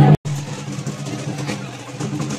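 Loud music cuts off suddenly a moment in. It gives way to a quieter outdoor din with a steady low hum underneath.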